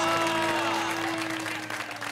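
Audience applause fading away, with a steady held musical note running under it.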